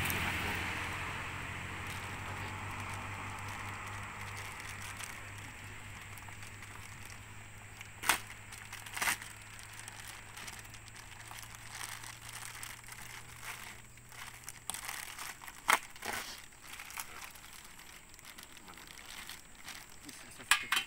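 Hands working the plastic fuel pump assembly and its wiring on a removed fuel tank: soft rustling and crinkling, with three sharp clicks about eight, nine and sixteen seconds in. A faint low hum sits underneath and fades out in the second half.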